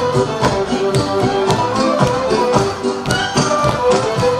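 Traditional Romanian folk dance music with a fiddle carrying the melody over a steady beat, about two beats a second.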